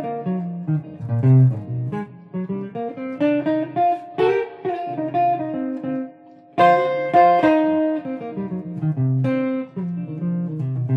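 Electric semi-hollow guitar playing improvised jazz single-note lines over a backing vamp with a bass line on a D minor 7 flat 5 chord, the lines treating it as a D7 altered chord. The playing drops away briefly about six seconds in, then comes back loud.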